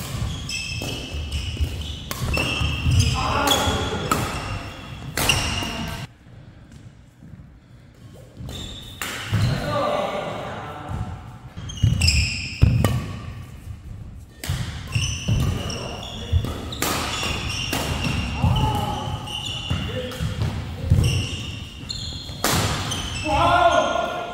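Badminton doubles rallies in an indoor hall: sharp racket strikes on the shuttlecock and court shoes squeaking on the court floor, with players' voices. A quieter lull between points comes about six seconds in.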